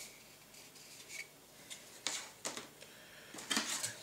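Plastic model-kit sprues being handled on a cutting mat: light rubbing and clicking of plastic, with a few sharper clacks about two seconds in and a cluster of clacks near the end as a sprue is set down.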